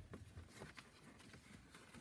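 Near silence inside a closed car cabin, with a few faint light clicks.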